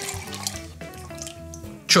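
Grapefruit juice trickling and dripping through a fine sieve into a measuring glass, under steady background music.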